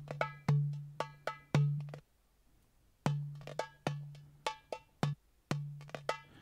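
Sampled derbuka (goblet drum) loops playing back in the BeatHawk app, deep ringing strokes mixed with sharp high slaps in a quick rhythm. The first loop stops about two seconds in, and after about a second of silence a second derbuka loop starts.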